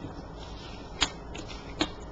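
Tarot cards being handled and laid down on a table: two short, sharp taps, one about a second in and one near the end.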